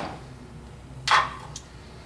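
A single sharp metallic clink of hand tools being handled about a second in, ringing briefly, over a faint low hum.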